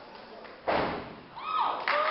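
One loud, sudden stomp on a stage floor, as from a line of steppers hitting the floor together, about two-thirds of a second in and fading quickly in the hall. High voices call out in gliding shouts near the end.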